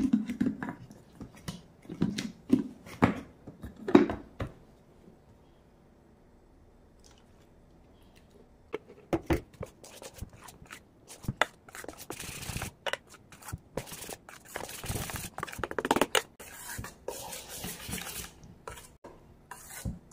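Sharp knocks of kitchen utensils being handled, then, after a short lull, a metal spoon stirring thick dosa batter in a stainless steel pot, with repeated scraping and clinking against the pot's sides.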